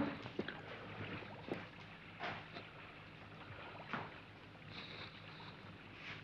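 Quiet room tone with a few faint, scattered soft knocks and rustles: a man walking across a tiled floor and sitting down in an upholstered armchair.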